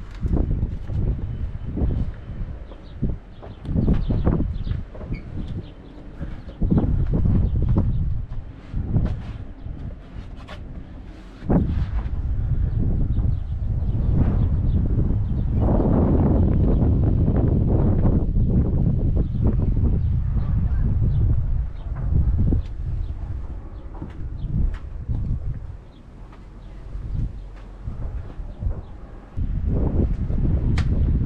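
Wind buffeting the microphone in uneven gusts, a low rumble that swells and drops, with a long, loud gust through the middle.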